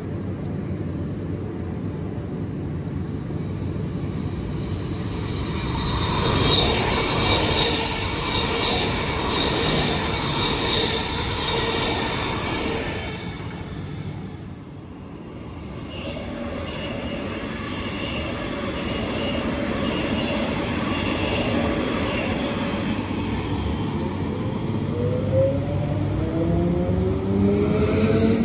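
Queensland Rail electric multiple unit at a station platform, its equipment giving a steady hum with high held tones, then pulling away near the end with its traction motors whining upward in pitch as it accelerates.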